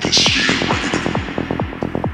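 Progressive psytrance: a rapid, steady run of synth notes that each drop sharply in pitch, about eight a second, with a burst of hiss at the start that fades within half a second.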